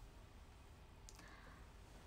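Near silence: faint room tone, with a couple of faint short clicks about a second in.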